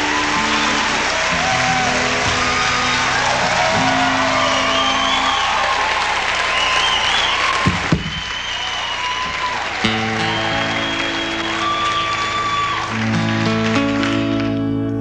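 Concert audience applauding and cheering, with whoops and whistles, over an acoustic guitar sounding held notes and chords. The guitar comes through more clearly from about ten seconds in. There are two sharp knocks just before eight seconds in.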